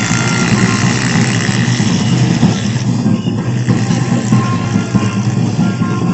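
Loud, dense din of a large street crowd with music mixed in, rumbling and steady.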